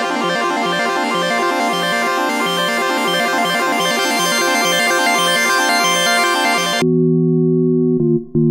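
Arturia MiniFreak hybrid synthesizer playing a preset: a bright, rapidly pulsing chord sound that changes about seven seconds in to a darker, sustained low chord.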